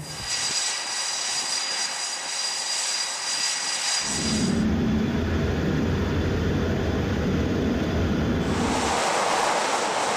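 Jet engines of F/A-18 Super Hornet aircraft running on a carrier deck. A steady high whine for the first four seconds, then a strong deep rumble joins in from about four seconds in, and the sound changes to a rushing noise near the end.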